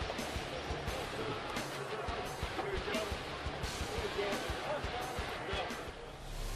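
Ballpark crowd chatter with music over the stadium PA, and many short sharp hand slaps as players trade high-fives and handshakes.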